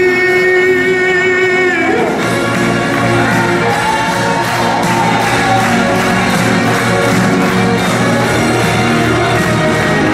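A man singing through a PA system over a backing track, holding one long note that ends about two seconds in; the instrumental backing then carries on alone.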